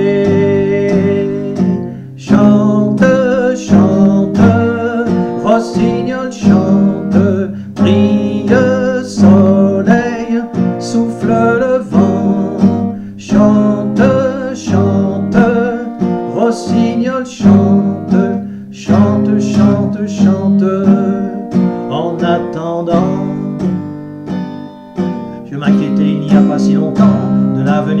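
Acoustic guitar strummed steadily, accompanying a man's singing voice in a slow French song.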